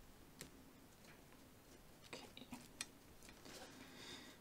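Near silence, with a few faint clicks and taps from hands pressing a dough disc onto a dough ball.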